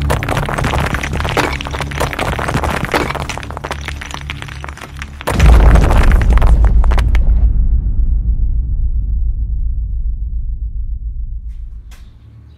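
Logo-reveal sound design: a dark music bed with crackling noise over low drones, then a sudden loud crash of shattering stone with a deep boom about five seconds in. The boom and debris noise fade out slowly over the following several seconds.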